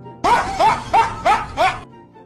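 Comic sound effect laid over the clip: five short yipping calls, each rising and falling in pitch, about three a second, much louder than the faint background music.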